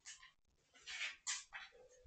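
A few short, faint rustles of a hand scratching a tabby cat's fur against a fleece blanket: one near the start, then a cluster of three or four about a second in.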